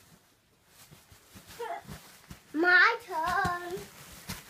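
A young child's voice calling out in two loud sing-song cries, the first rising sharply, the second held and wavering, with a few soft thumps underneath.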